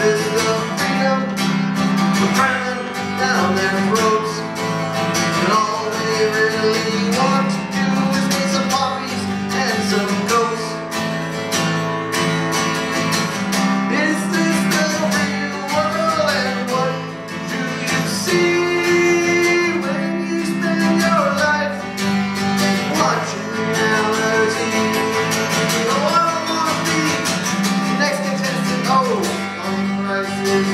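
Acoustic guitar strummed steadily, with a man's voice carrying a wavering melody over it.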